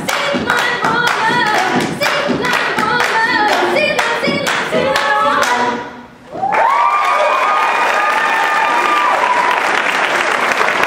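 A cappella vocal group singing over rhythmic hand claps, breaking off briefly about six seconds in, then holding a final sustained chord. Audience applause builds under the last chord.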